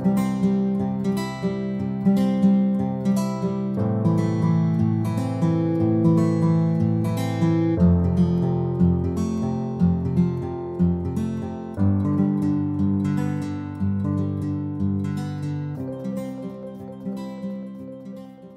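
Outro music played on acoustic guitar, strummed and plucked chords, fading out near the end.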